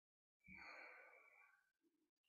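A single faint, deep breath out close to the microphone, starting about half a second in with a soft puff and fading within about a second: a slow cleansing breath during a guided meditation. Otherwise near silence.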